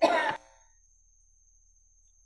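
A person briefly clearing their throat, one short burst right at the start, followed by quiet with a faint steady high-pitched whine in the background.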